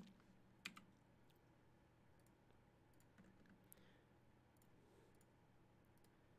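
Near silence with faint clicks from a computer mouse and keyboard: two sharper clicks in the first second, then a few fainter ones over a low steady room hum.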